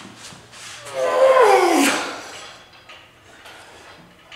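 A man's strained groan of effort while pulling hard against a resistance band, about a second long, breathy and falling in pitch, with a few faint clicks before it.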